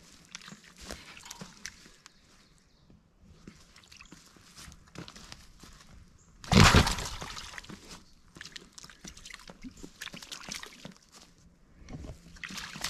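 A feral boar hog moving in a muddy, water-filled wire corral trap, with light rustling and scattered small noises. About six and a half seconds in comes one loud, sudden noise that fades over a second or so.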